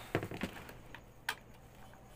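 Light being switched on at a wall socket: a few small clicks and knocks of handling, then one sharp click a little past the middle. Under it, a steady low hum of an electric fan.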